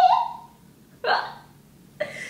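A woman's two short bursts of stifled laughter, one at the start and one about a second in.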